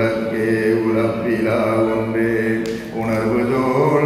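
A male Hindu priest chanting a mantra into a microphone, holding long, steady notes of about a second each with short breaks between them, and a brief hiss about two-thirds of the way through.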